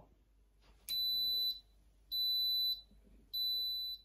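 Instant Pot electric pressure cooker beeping three times, evenly spaced steady high tones, after being set for a six-minute rice programme.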